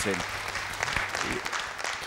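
Studio audience applauding, a steady spatter of many hands clapping.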